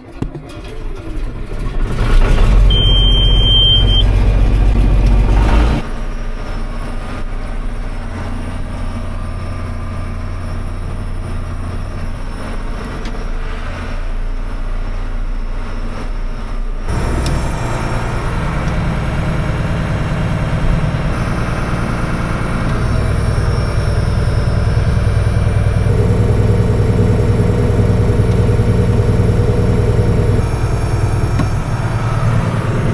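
John Deere tractor's diesel engine running, heard from inside the cab, with a single short high beep about three seconds in. The engine sound shifts abruptly twice, near six and seventeen seconds.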